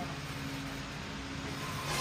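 A steady low hum under an even background hiss, with no one speaking.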